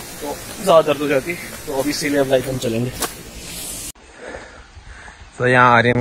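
A man's voice talking over a steady background hiss. About four seconds in, the sound cuts abruptly to a quieter, cleaner recording, and near the end he starts speaking again.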